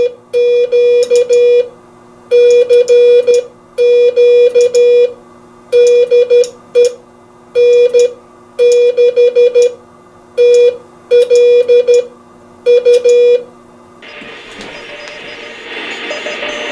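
Morse code (CW) from an electronic keyer and paddle: a steady mid-pitched tone keyed in groups of dots and dashes, with short pauses between the groups. About fourteen seconds in the keying stops and a hiss of band noise from the receiver rises.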